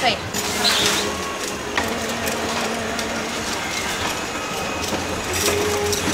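Busy food-stall ambience: background chatter of voices, a faint steady hum, and scattered light clicks of metal scoops against serving trays.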